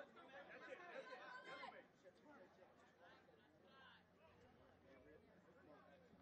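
Faint chatter of spectators' voices in a ballpark, clearer in the first two seconds and then dropping to a quieter murmur.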